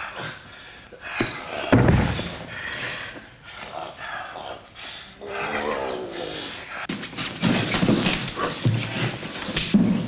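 Two heavyweight wrestlers grunting and growling with strain as they grapple in a clinch, with a heavy thud about two seconds in.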